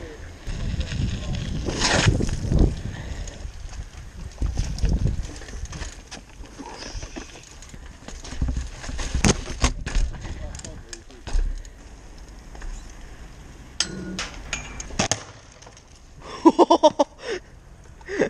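Freeride mountain bike ridden fast over pavement and asphalt, heard from a bike-mounted camera: wind on the microphone and tyre rumble, broken by sharp clicks and knocks from the bike. Near the end a rider laughs in short bursts.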